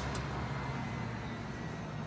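Steady city street traffic noise, with a bus driving by close to the microphone.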